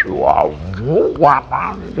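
A man's voice imitating an old radio being tuned: a few wavering whines that rise and fall in pitch.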